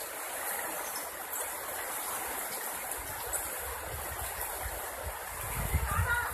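Fast-flowing river water rushing steadily past the bank. A low rumble builds up in the second half.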